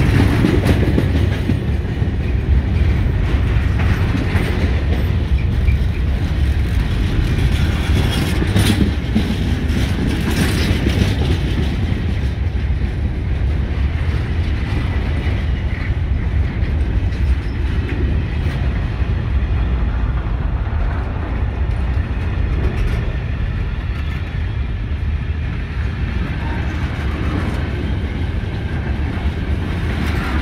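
Container freight wagons rolling past at close range: a steady low rumble of steel wheels on the rails, with a few brief clicks and clanks.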